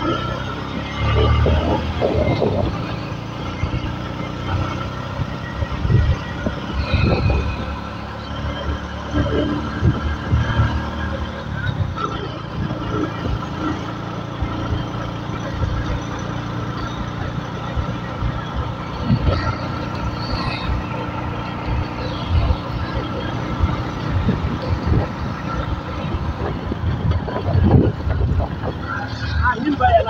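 Steady vehicle running noise with indistinct voices in the background.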